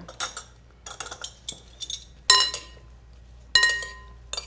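Metal serving utensils clinking against a glass mixing bowl as an herb salad is tossed. There is a string of taps, and the two loudest, a little past two seconds in and near the end, leave the bowl ringing briefly.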